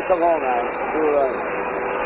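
People's voices talking, words unclear, in short bursts over a steady background noise.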